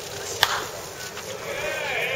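A pitched baseball smacking into the catcher's mitt: one sharp crack about half a second in. Near the end comes a drawn-out call from a voice.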